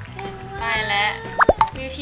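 Speech over light background music, with a quick cartoon-style plop sound effect, two fast pitch sweeps, about a second and a half in.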